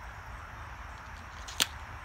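A single sharp click about one and a half seconds in, over a steady low rumble and faint hiss.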